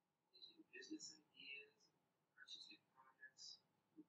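Near silence with a few faint whispered sounds, as of someone muttering under her breath.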